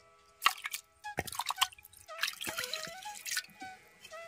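Water splashing and dripping as hands lift pieces of fresh ginger out of a pot of washing water. There is a sharp splash about half a second in, and more splashes and drips through the middle.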